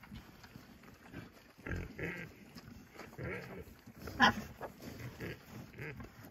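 Pigs grunting at intervals while they eat from feed pans, with a short, sharp sound about four seconds in.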